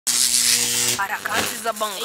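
A steady electrical-sounding buzz with hiss for about a second, cutting off as speech begins.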